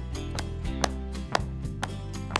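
Hand claps in a steady beat, about two a second, over light background music.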